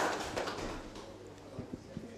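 Quiet room noise of a seated audience in a hall: a hiss that fades away over the first second, faint murmuring, and a few soft knocks late on.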